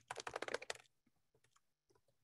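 Keystrokes on a computer keyboard as a command is typed: a quick run of key clicks in the first second, then a few faint scattered keystrokes.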